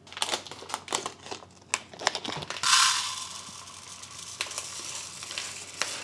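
Kitchen handling sounds at a stainless-steel sink: clicks and knocks as a pot is handled, then a plastic bag of rice crinkling and dry rice grains rushing as they are scooped and poured, loudest about three seconds in.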